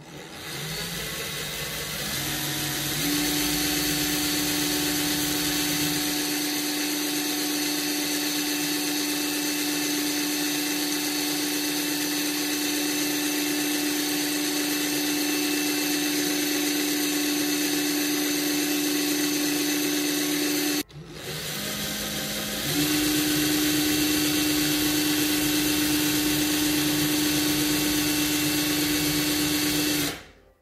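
Electric drill motor running steadily as it spins a 24-gauge core wire, winding a thin nichrome wrap wire onto it to form a Clapton coil. It speeds up over the first few seconds, stops about two-thirds of the way through, then starts again and speeds back up.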